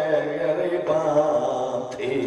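A man's voice in a chanted majlis recitation, drawn out in long held melodic lines into a microphone, with a short break about a second in.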